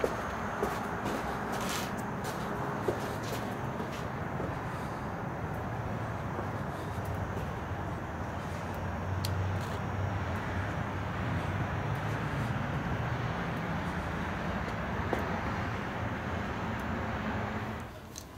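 Steady low rumble and hiss of background noise, a little stronger in the middle, with a few faint clicks.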